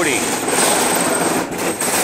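Metal shopping cart rolling close by, its wheels giving a steady loud rattle as they run over the raised tactile paving at the curb.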